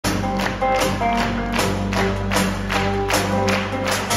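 Live band playing amplified music, an instrumental stretch with a steady beat of about two strokes a second over sustained bass and keyboard/guitar notes.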